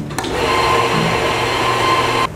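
A café machine running with a steady whirring hiss and a constant high tone, starting abruptly just after the beginning.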